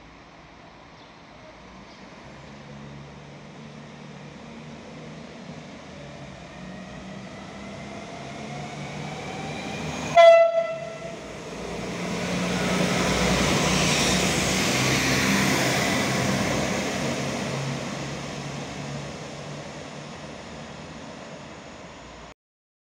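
PESA SA134 diesel railcar approaching with its engine note rising, sounding a short horn blast about ten seconds in, then running past and fading.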